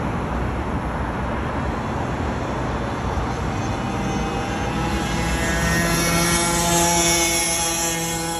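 Street traffic noise with a passing motor vehicle: a steady engine hum comes in about three seconds in and grows louder toward the end, with a rising hiss.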